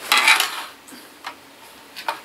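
A grey plastic LEGO road plate handled against a tabletop: a clattering scrape for about half a second, then a single light click about a second later.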